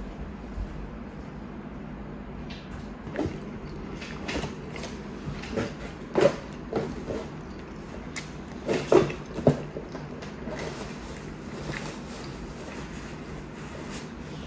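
Metal chopsticks handling sauce-coated tteokbokki rice cakes on a plate: a scattering of short, wet clicks and taps, loudest around the middle, over a steady low hum.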